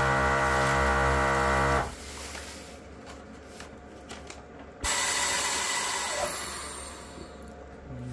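Wevac CV12 chamber vacuum sealer running a cycle on a Mylar bag. Its vacuum pump hums steadily and cuts off about two seconds in. After a quieter few seconds while the bag is heat-sealed, air rushes back into the chamber with a sudden loud hiss that fades away.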